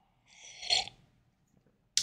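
A man drinking from a mug: one short breathy sip, about half a second long, a little under a second in.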